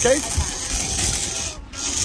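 Big-game conventional fishing reel's drag buzzing steadily as a hooked shark runs and pulls line off the spool. It eases off about a second and a half in.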